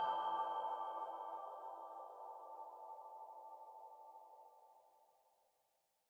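The song's closing chord: several held notes ringing on with the bass already gone, fading away slowly to silence about five and a half seconds in.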